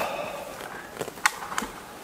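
Footsteps through forest undergrowth, with several short sharp cracks of twigs and branches snapping underfoot.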